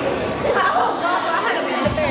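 Indistinct chatter of several people talking at once in a large hall.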